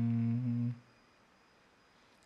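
A man's voice holding a long, steady hummed note, the drawn-out closing nasal of a chanted Pali verse. It stops about three quarters of a second in, and near silence follows.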